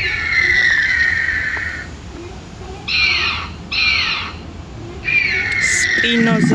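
A series of high, bird-like calls: a long call sliding down in pitch, then two short hooked calls under a second apart, then another long falling call near the end.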